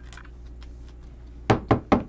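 Three quick, sharp knocks about one and a half seconds in: a rigid plastic card top loader being tapped and knocked against the tabletop while cards are handled, with faint plastic handling before it.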